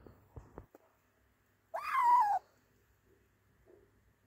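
Young ginger kitten meowing once, about halfway through: a single call that rises and then falls in pitch.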